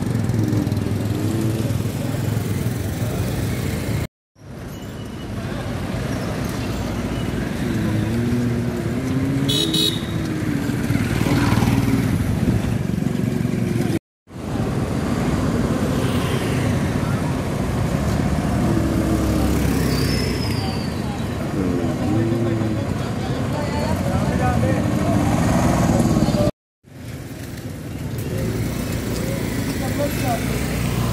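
Street traffic: motorcycle and car engines passing, with indistinct voices and a brief horn toot about nine seconds in. The sound cuts out briefly three times.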